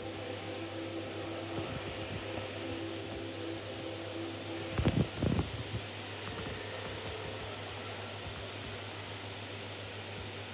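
Steady room hiss and a constant low hum picked up by a phone microphone. Faint sustained tones from the TV stop about halfway through, followed at once by a short cluster of low thumps.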